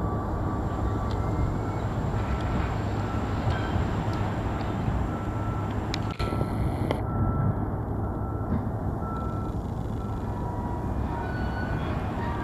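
Union Pacific doublestack intermodal freight train rolling across a steel truss railway bridge: a steady rumble, with short repeated high-pitched tones sounding through it, more of them near the end.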